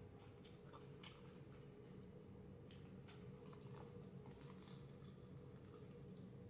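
Near silence: faint chewing and a few soft mouth clicks from eating fried chicken wings, over a low steady hum.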